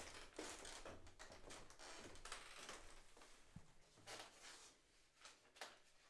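Near silence with faint footsteps, shuffling and scattered small knocks as people move about and settle in a quiet room.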